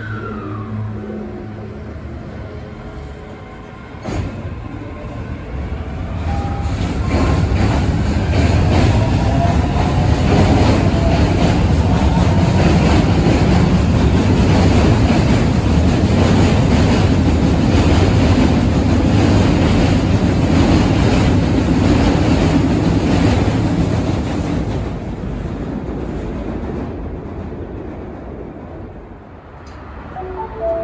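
An Osaka Metro Midosuji Line electric train pulling out of the station: its motor whine climbs in pitch as it speeds up, then the cars go past with a loud rumble and an even clatter of wheels on the rails, fading away as the last car leaves.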